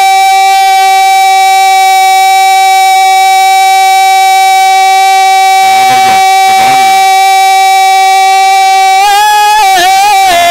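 A man's voice holding one long sung note of a naat through a microphone and loudspeakers. The note stays level in pitch, then wavers into an ornamented run about nine seconds in.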